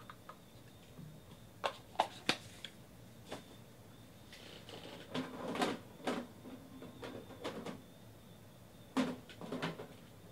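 Trading cards and their packaging being handled and set down on a table: a few light clicks and taps about two seconds in, then brief clusters of rustling and knocking around the middle and near the end.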